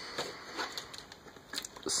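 Plastic parts of a small transformable toy robot being handled, with faint scattered clicks and rubbing as a shoulder pad is slid on and pressed onto its peg.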